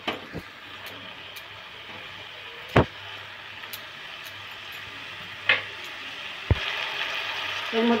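Diced vegetables and split dal frying in oil in a metal kadai, a faint steady sizzle, with a spatula knocking against the pan four times. The sizzle grows a little louder in the last second or so.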